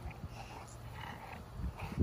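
Dogue de Bordeaux puppy making faint, short vocal sounds, a few in a row, while mouthing a rubber ball.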